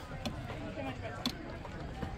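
Faint background crowd chatter, with a sharp metallic click just past a second in and a weaker one near the start, from the chain geode cracker as its lever handle is pushed down on the geode.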